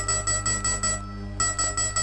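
Electronic beeps in a steady pulsed series, about six a second, broken by a short pause about a second in before resuming, over a steady low hum. This is a sound effect for an artificial radio beacon signal of methodical pulses.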